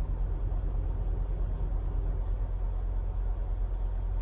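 Semi truck's diesel engine idling, a steady low rumble heard inside the cab.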